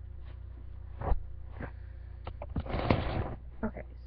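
Handling noise close to a webcam microphone: a few sharp knocks and a brief rustle as she moves around in front of the camera, over a steady low electrical hum.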